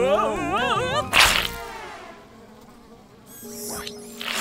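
A cartoon fly's wavering laugh, then a whoosh and a buzz that drops in pitch and fades away. A low steady hum comes in near the end.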